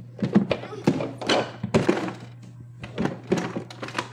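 Hard plastic knocking and clattering: a plastic storage box and the toys inside it are handled and rummaged through, with a string of uneven thunks.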